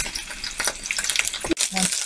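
Chicken pieces sizzling as they brown in hot vegetable oil in a frying pan, a dense, steady crackle that breaks off briefly about one and a half seconds in.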